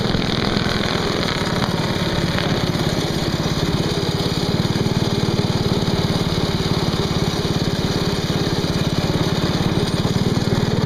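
Single-cylinder four-stroke go-kart engine running steadily at speed, heard up close from the kart, with a rapid even firing beat.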